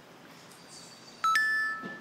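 Smartphone message notification: a two-note rising chime, the second note held briefly, signalling an incoming chat reply.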